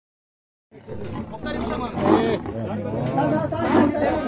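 After a brief silence, a leopard growling in a cage, with men's voices talking around it.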